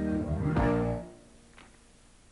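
Live band music with electric bass guitar notes under sustained chords, cutting off about a second in and leaving a brief near-silent pause with one faint note.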